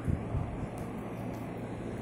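A steady low hum of background noise, with two dull knocks in the first half-second.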